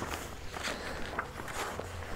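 Soft, scattered rustling and light taps of loose paper sheets being handled and leafed through, over a low steady hum.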